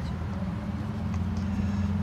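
Tour tram running at steady speed, a low, even hum with no change.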